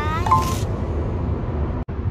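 Steady low rumble of road and engine noise inside a moving car's cabin, with a child's high voice briefly at the start. The sound cuts out abruptly for a moment near the end.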